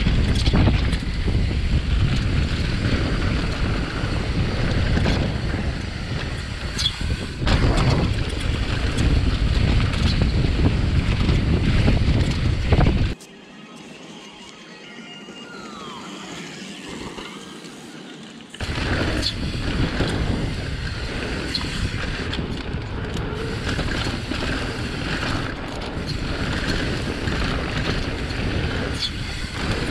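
Downhill mountain bike ridden fast on a dirt trail, heard close up from an action camera: wind buffeting the microphone and tyres rolling over dirt, with sharp clatters as the bike hits bumps. About thirteen seconds in it cuts to a much quieter stretch with a few faint chirping glides, and the riding noise comes back about five seconds later.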